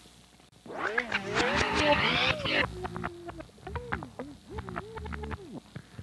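Vinyl record on a turntable playing garbled, starting about a second in, its sound wavering in pitch and broken by a run of sharp clicks: the record is malfunctioning.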